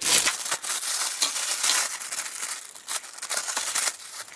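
Thin black plastic mailer bag crinkling and crackling as it is cut open with scissors and pulled apart, a dense run of small crackles that is loudest in the first couple of seconds. It goes quieter near the end as the bubble-wrapped item inside is handled.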